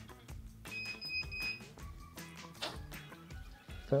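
Small FPV cinewhoop drone's motors playing a short electronic startup melody after its battery is plugged in. The tune comes as a series of held tones stepping in pitch, with a high beep about a second in.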